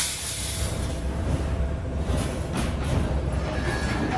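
Steady low workshop rumble with a few light metallic clinks, about two seconds in and again near the three-second mark, from iron-wire cage mesh panels being handled.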